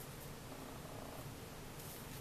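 Faint, steady low rumble close to room tone.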